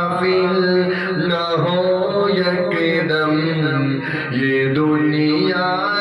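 A solo male voice reciting an Urdu naat, sung in long, melismatic held phrases that rise and fall in pitch without pause.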